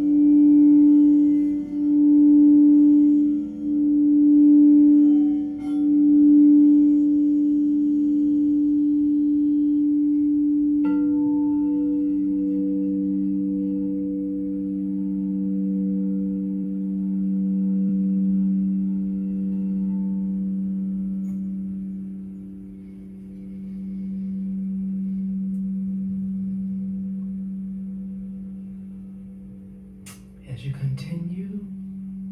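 Frosted quartz crystal singing bowls ringing with pure, sustained tones. For the first six seconds one bowl's tone swells and ebbs about every two seconds. About eleven seconds in, a lower bowl is struck and rings on in a long tone that slowly fades toward the end.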